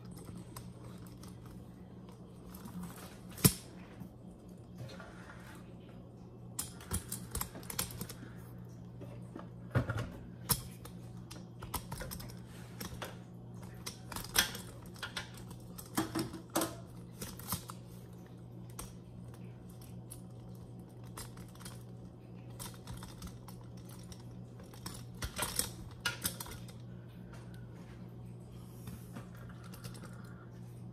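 Clicks and knocks of a camera tripod being handled as its legs are adjusted and it is moved into place, coming in scattered clusters with one sharp knock about three and a half seconds in. A steady low hum runs underneath.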